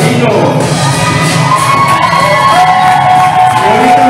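Beatboxing into a handheld microphone, with long held and gliding vocal tones, over an audience cheering and whooping.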